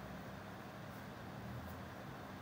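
Quiet room tone: a faint steady low hum with light hiss, no distinct sound events.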